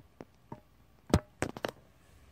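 Handling knocks and taps on a homemade stick guitar as it is settled into playing position: a handful of sharp, separate clicks, the loudest a little past the middle, followed quickly by three more.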